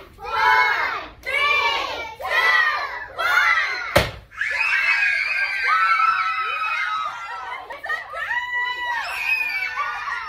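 Young children's voices calling out in short bursts, then a large confetti balloon pops sharply about four seconds in. A group of children screams with excitement right after the pop and for several seconds.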